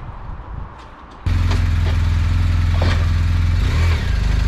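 BMW R1250 GS Adventure's boxer-twin engine running close to the microphone. It comes in suddenly about a second in and holds steady as the motorcycle moves up onto a trailer.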